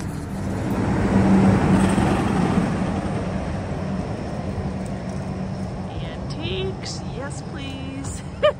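A car driving past on the street, loudest a second or two in and then fading away, over a steady low traffic rumble.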